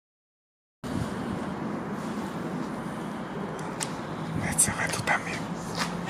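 Dead silence for the first second, then steady background noise of a large empty concrete hall with a faint low hum. In the second half come a few sharp crunches and clicks of boots on broken concrete and rubble, with faint voices.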